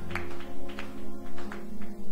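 Keyboard music playing under a sermon: sustained held chords with a regular pulse of note attacks, about two a second.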